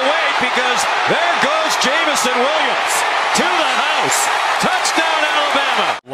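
Football TV broadcast audio: a commentator's voice, mostly not made out, over steady, dense stadium crowd noise. It ends with an abrupt cut.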